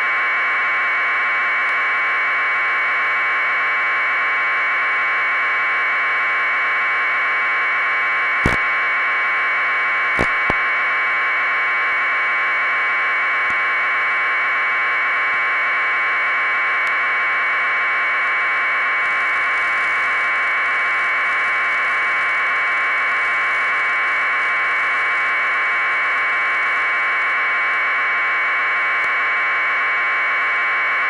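Steady, loud hiss like radio or transmission static, unchanging throughout. A sharp click comes about eight seconds in and two quick clicks follow about two seconds later.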